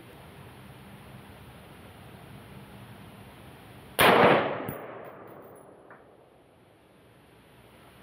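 A single rifle shot from a semi-automatic .223 rifle about halfway through, sharp and loud, with a ringing tail that dies away over about a second. Before it there is only a low, steady background hiss.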